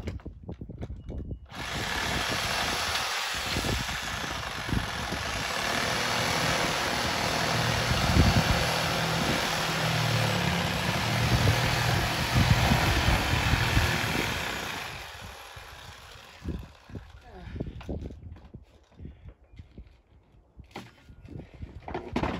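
Corded power saw cutting through an old hot tub's shell and foam: a loud, steady cutting noise that starts abruptly about a second and a half in and fades out about fifteen seconds in, followed by scattered knocks.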